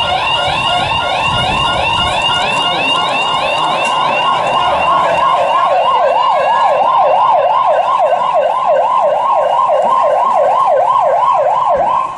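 Electronic alarm siren wailing in fast, even up-and-down sweeps, about three a second, growing louder about halfway through: the bank's hold-up alarm, set off by a teller.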